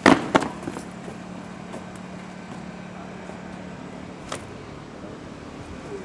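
Two sharp knocks in quick succession at the start, from a fire hose and its couplings being handled during a fire-pump hose-laying drill, then a steady low hum with a single faint click partway through.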